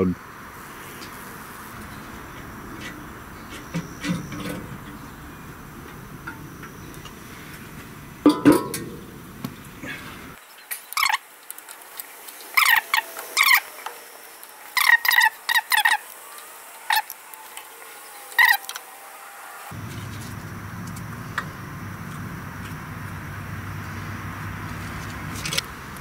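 Sharp metallic clicks and taps of hand tools on a small engine's carburetor, scattered through the middle of the stretch, as a stuck float needle is worked free. A steady low background noise lies underneath.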